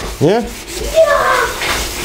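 A rag rubbing back and forth over wet, rusty sheet steel, wiping off rust remover solution to reveal clean metal.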